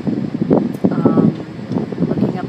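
Wind buffeting the phone's microphone in uneven gusts, over a steady wash of street traffic from below.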